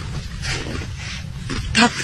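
Steady low rumble and hiss of wind buffeting the microphone outdoors, with a man saying one short word near the end.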